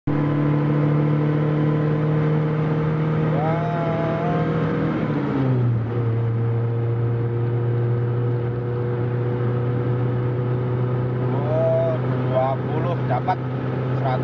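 Suzuki Escudo engine heard from inside the cabin while driving, a steady drone whose pitch steps down about five seconds in and then holds level. The engine has just been fitted with an aftermarket 7Fire CDI ignition unit.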